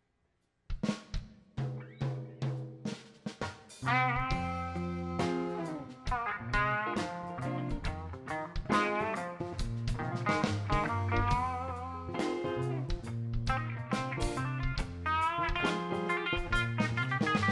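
A live rock band comes in after a moment of silence. Drum hits with low bass notes start the song, and about four seconds in a guitar line with bent notes joins over the full band.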